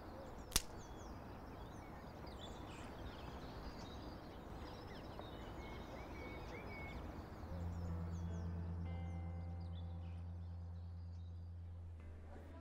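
Faint outdoor park ambience with birds chirping and one sharp click about half a second in. From about seven and a half seconds a low steady drone with faint higher tones sets in.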